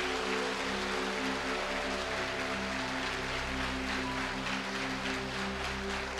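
Soft background music of a few sustained, held tones that change slowly, over a steady hiss.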